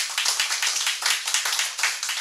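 Audience applauding, many hands clapping together.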